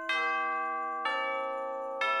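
Background music of bell-like chime notes, a new note struck about once a second, each ringing on and slowly fading.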